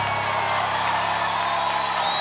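Studio audience applauding and cheering over a low, steady held musical chord.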